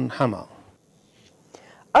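A man's voice finishing a news report sign-off, a pause of about a second and a half of near silence, then a woman's voice starting to read the news.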